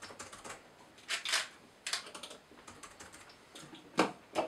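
Typing on a laptop keyboard: irregular bursts of quick key clicks, the busiest burst a little over a second in.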